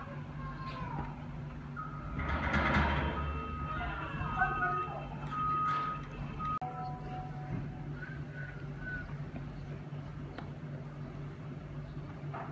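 Diesel engines of a wheel loader and a dump truck running with a steady low drone, swelling louder about two seconds in. In the middle come short high beeps that switch on and off.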